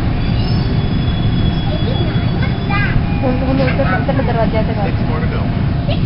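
Toronto TTC subway train running along a station platform: a steady low rumble from the car, with a thin high whine held through the first half. Passengers' voices come in over it in the second half.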